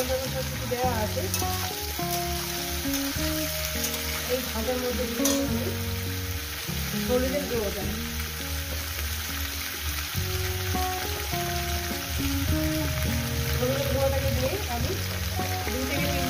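Diced vegetables frying in oil in a metal kadai with a steady sizzle, with a metal spatula scraping and stirring them now and then. Background music with a melody plays over it.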